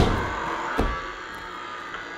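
A loud thump on a stage floor as a performer moves from the floor, then a softer thump under a second later, followed by quiet room tone.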